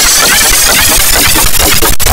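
Loud, harsh, distorted audio made of four pitch-shifted copies of one soundtrack stacked on top of each other, the 'G Major' edit effect. It forms a dense noisy mass at every pitch with wavering tones running through it.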